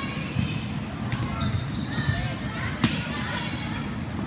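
A volleyball being played in a large gym hall, with a sharp smack of the ball a little before the end and a softer hit about a second in, over background voices and room echo.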